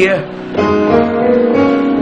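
Electronic keyboard playing held chords: a sung note falls away at the very start, then a new chord is struck about half a second in and sustained.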